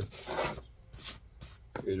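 A sheet of sandpaper and a small wooden bellows block being handled on a workbench. A soft rubbing sound comes first, then two short scrapes about a second and a second and a half in.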